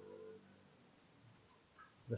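Near silence: room tone, with the faint tail of a low pitched sound dying away in the first half second.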